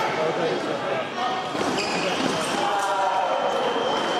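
Overlapping voices echoing in a large sports hall, with scattered thuds. A thin steady high tone comes in about halfway through.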